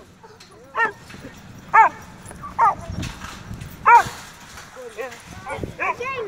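A dog yipping and whining in short, high calls, about five of them spread across the span, each rising and then falling in pitch.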